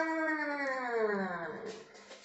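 A single long, pitched vocal call that slides steadily down in pitch for about a second and a half, then fades out.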